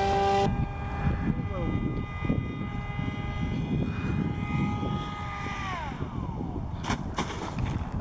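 High-pitched whine of an electric model rocket motor that drops away sharply about half a second in; a fainter whine carries on, then falls in pitch as the motor winds down around six seconds in, over a low wind rumble. A couple of sharp knocks near the end.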